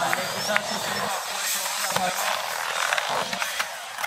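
Skateboard wheels rolling and carving around a skate bowl, with a few sharp clicks, over the chatter of a watching crowd.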